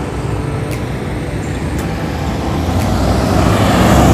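Road traffic rumble, with a motor vehicle approaching and passing close by: its engine and tyre noise grow steadily louder over the last second and a half.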